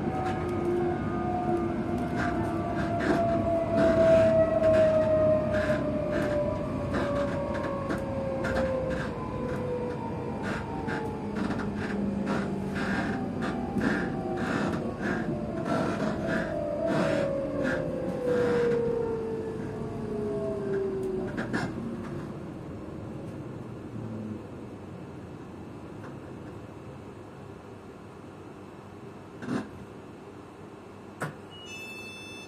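Electric multiple-unit train braking into a station: the traction motor whine falls slowly in pitch over the first two-thirds, with a run of wheel clicks over the rail joints, then dies away about 21 seconds in as the train stops, leaving a quieter steady hum.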